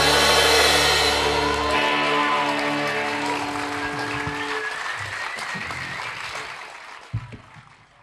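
A live band's last chord rings out and dies away, then the audience applauds, the clapping fading out toward the end. A single thump sounds about seven seconds in.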